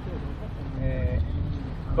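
Steady low outdoor rumble with faint, brief voices about halfway through.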